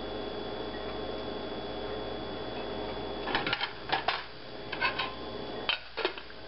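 A steady hum, then from about halfway a run of sharp metallic clinks and clatters: a spatula and a stainless steel lid knocking against a frying pan.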